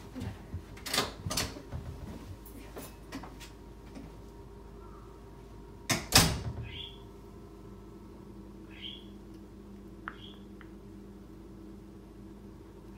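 Household knocks and clicks, like cupboard or closet doors being opened and shut, several in the first few seconds and one loud thump about six seconds in. A few faint short high squeaks follow, over a steady low hum.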